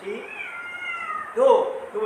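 A cat meowing: one long, falling call, followed by a short, louder voice-like sound about a second and a half in.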